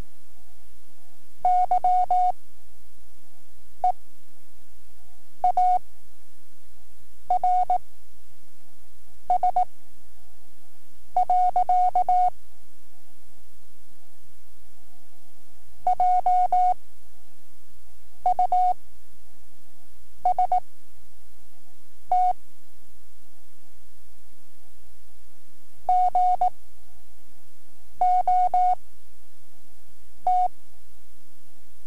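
Morse code practice tone from an ARRL training cassette: a single steady pitch keyed in quick clusters of dots and dashes, each character followed by a gap of one to two seconds, the slow spacing of 5-word-per-minute novice practice code. A steady low hum lies under it.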